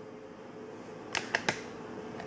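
Three quick light clicks of a small glass beaker handled on a tabletop, a little past a second in, over a faint steady hum.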